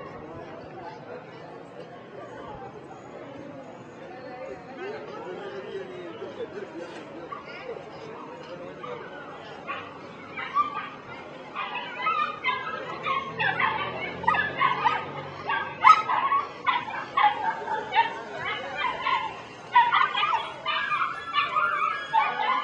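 Pit bull terriers barking over the murmur of a crowd. The first half is mostly low chatter; from about halfway the barks come often and loud, in short sharp bursts.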